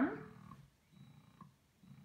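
Faint hum of a Spectra 9 Plus electric breast pump motor running in massage (letdown) mode, with two soft pulses about a second apart.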